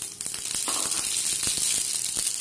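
Hot oil and melted butter sizzling in a frying pan, a steady hiss dotted with small crackles.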